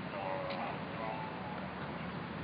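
Faint distant voices over steady background noise, with a single sharp click about half a second in.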